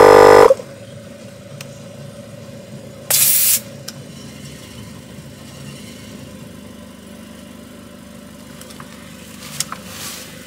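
Portable tire inflator running with a loud steady drone, cutting off about half a second in. About three seconds in comes a short hiss of air as the inflator hose comes off the tire's valve stem.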